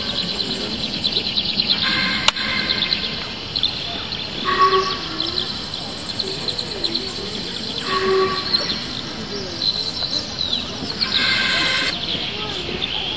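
Soundtrack of a son-et-lumière show playing outdoors, heard among a crowd: a steady high, crackly ambience with short held chords every few seconds, and crowd voices underneath.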